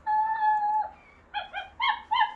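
Interactive plush toy dog playing its recorded dog sounds through its speaker: one held whine, then a quick run of short, high yips from about a second in.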